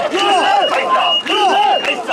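Mikoshi carriers chanting together as they bear the shrine: a loud, rhythmic shouted call from many men, repeating about once a second.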